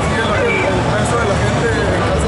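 A man speaking into a handheld microphone over a steady low background rumble.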